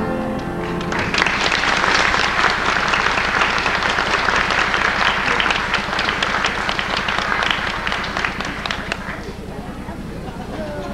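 Audience applauding, starting about a second in as a song ends and fading out near the end.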